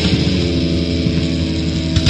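Heavy metal band recording near the close of a song: an electric guitar chord is held and rings out over steady bass notes, with the drumming thinning out before the next loud hits.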